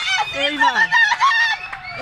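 Several people shouting and calling out at once: overlapping, mostly high-pitched yells and cries, with one lower voice falling in pitch about half a second in.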